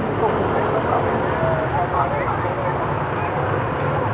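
Street traffic noise with a steady low engine hum and faint murmured voices in the background.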